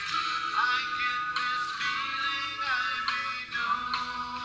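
Live band playing a song: a gliding lead melody over a steady run of plucked notes.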